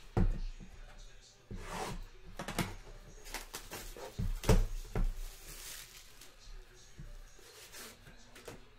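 Sealed cardboard trading-card box being handled and unwrapped: a few sharp knocks of the box against the table, the loudest about halfway, with crinkling and tearing of its plastic shrink-wrap in between.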